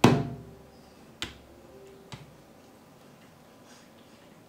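Small plastic acrylic paint bottles knocking down onto a flat painting board: a sharp knock at the start, then two lighter knocks about one and two seconds in.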